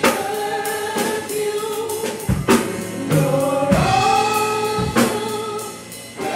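Live gospel worship music: singing with long held notes over keyboard and drum kit, with a few drum and cymbal hits.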